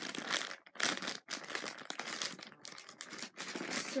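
Plastic squishy packaging crinkling in irregular bursts as it is handled.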